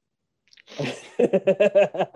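A person laughing: a breathy burst, then a quick run of short voiced 'ha' pulses.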